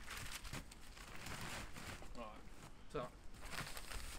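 Plastic building-material bag rustling and crinkling as it is handled, with a couple of short spoken words in the second half.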